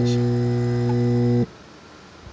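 Steady electrical hum of an air pump running off a 12 V DC to 120 V AC power inverter, cutting off suddenly about one and a half seconds in. It is one of the regular on-off power cycles: the pump keeps switching on and off at exactly the same intervals instead of running continuously.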